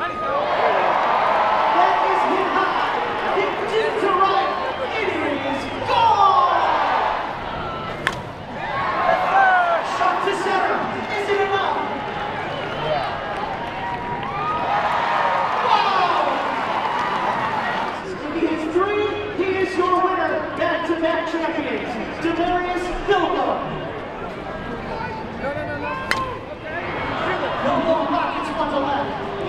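Several people talking and calling out over each other, over crowd noise. A couple of sharp cracks, about eight seconds in and again near the end, from a bat hitting a softball.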